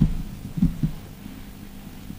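Three soft, low thumps within the first second, the first the loudest, followed by a faint steady hum.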